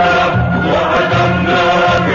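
Music: an Arabic patriotic anthem sung by voices in chorus over orchestral accompaniment, with held sung notes over a steady bass line.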